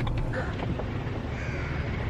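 Two short harsh bird calls, about a second apart, over a steady low background noise.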